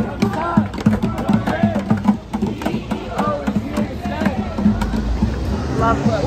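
Crowd of marching protesters chanting in rhythm, with a regular beat about twice a second under the voices.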